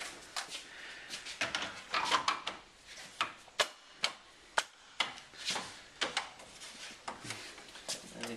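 Plastic front grille of a Land Rover Discovery 4 being handled and pushed into place on the front panel: irregular sharp clicks and knocks with a little rubbing as it is wiggled onto its locating pins.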